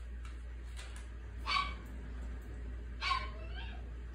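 A small dog giving two short whines, about a second and a half apart.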